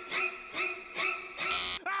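Soft pitched vocal sounds repeating about twice a second, then a short, loud electric buzz from a handheld device pressed to a man's head near the end.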